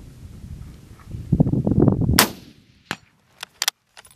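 A single shot from a WWII-era bolt-action military rifle, one sharp crack a little past halfway that dies away quickly. About a second of low rumbling comes just before it, and a few brief sharp clicks follow.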